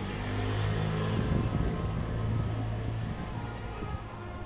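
A car driving past on the street: a low engine hum and tyre noise that swell about a second in and fade toward the end.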